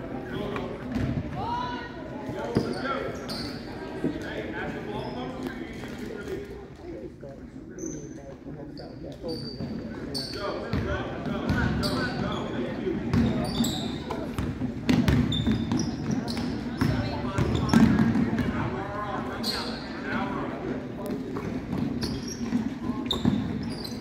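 Basketball game in a gym: the ball bouncing on the hardwood floor in repeated sharp thuds, sneakers squeaking, and spectators' and players' voices, all echoing in the large hall.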